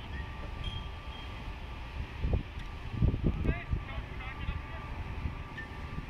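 Distant voices of players and spectators calling out across a ball field, with the low rumble of wind on the microphone underneath.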